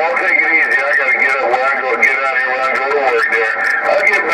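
Voices coming through a CB radio's speaker, thin and narrow-sounding and hard to make out, with crackles of static running through them.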